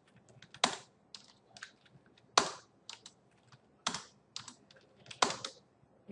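Computer keyboard keystrokes: a few separate, sharper key presses about every second and a half, with lighter taps in between.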